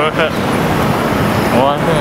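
Steady road traffic noise from a busy city street, cars and taxis passing close by. Two short vocal sounds come through it, one at the very start and one near the end.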